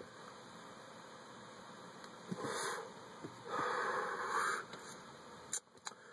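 A man smoking a cigarette, breathing the smoke in and out: two soft breathy rushes, a short one about two and a half seconds in and a longer one about a second later.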